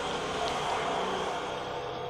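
Steady background hiss with a faint low hum, even throughout, with no distinct knocks or clinks.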